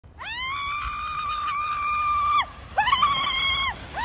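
A girl screaming in two long, steady, high-pitched screams, the first about two seconds long and the second about a second, with a third starting just at the end.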